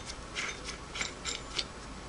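Singer 301A's stop motion clamp nut being turned by hand onto the heavy threads of the handwheel shaft: a run of faint, light metal ticks, about three a second.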